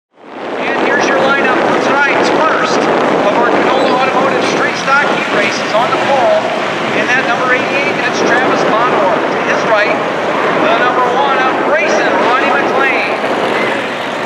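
Engines of a field of street stock race cars running around a short oval, heard from the stands with wind on the microphone. The sound fades in over the first half second.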